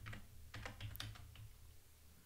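Keystrokes on a computer keyboard as a password is typed at a login prompt: a string of soft, irregular clicks that grow fainter toward the end.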